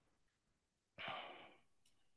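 A single short breath out, like a sigh, picked up by a meeting participant's microphone about a second in. The rest is near silence.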